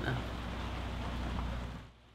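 Steady rain falling, heard from under a boat's covered cockpit, as an even hiss over a low hum. It fades out just before the end.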